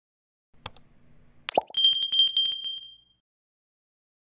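Subscribe-button animation sound effects: a mouse click, a second click about a second later, then a bright bell ring with a fast rattling trill that fades out after about a second and a half.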